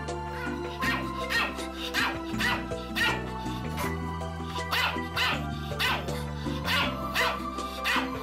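A Pomeranian barking repeatedly, about twice a second, from about a second in, over background music with slow held chords.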